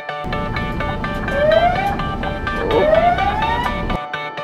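Fire engine siren giving two rising whoops, each about a second long, over a low rumble, with background music playing throughout.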